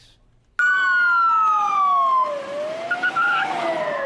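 Police car siren wailing. It cuts in about half a second in, falls slowly in pitch for about two seconds, then rises again, over a haze of street noise.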